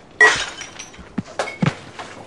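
A sudden loud crash with a short ringing tail, like something breaking, followed by a few sharp thuds and knocks as a man with a hand truck tumbles to the floor.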